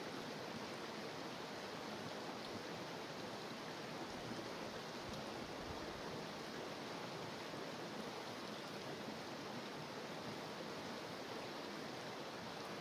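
Steady rushing of a shallow stream running over rocks.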